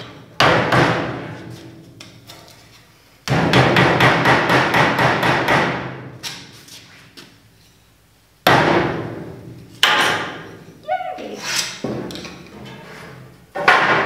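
Mallet driving a wooden wedge into the seam between two old glued boards to split the glue joint apart. Two runs of rapid knocks, each fading away, then a few single knocks.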